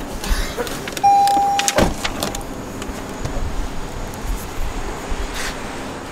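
Getting out of a parked car: a short steady electronic beep from the car about a second in, then a sharp thump of the car door, followed by low outdoor traffic noise.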